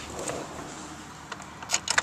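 Quiet cabin of a parked car with faint handling rustle, then a quick run of small sharp clicks and rattles near the end.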